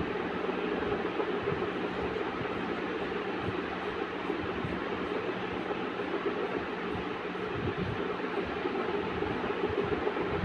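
Steady rushing hum of a running machine with a low steady tone in it. Large fabric scissors cut through cotton cloth under it, with a few faint knocks.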